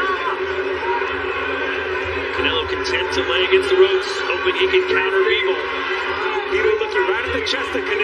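Arena crowd at a boxing match, a dense mass of shouting and cheering voices, with a few sharp impacts around the middle.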